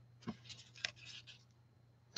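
Faint rustling and rubbing of paper and card stock being handled and repositioned by hand, a few short scratchy scrapes in the first second or so.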